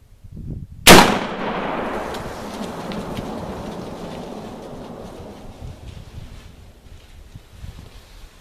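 A single muzzleloader rifle shot about a second in, followed by a long echo that fades away over several seconds.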